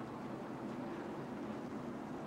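Steady speedway background noise: a low, even drone of distant race truck engines running under caution.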